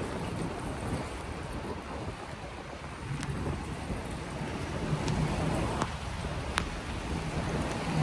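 Steady hiss of falling rain mixed with wind buffeting the microphone of a moving phone, with a few light ticks and a faint low hum of passing traffic in the middle.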